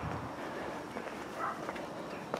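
Faint outdoor background noise with a few light clicks and knocks.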